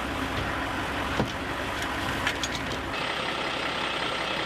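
Steady running of a vehicle engine, with two short knocks about a second apart as gear is handled against the vehicle. Near the end the low rumble drops away, leaving a thinner hum with faint steady tones.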